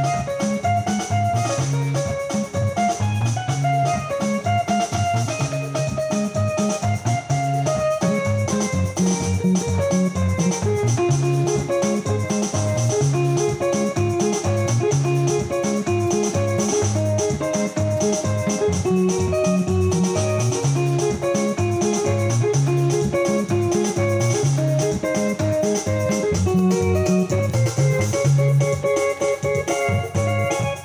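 Yamaha PSR-S670 arranger keyboard played in Congolese seben style: busy, repeating guitar-like melody lines over a steady bass line and drum beat.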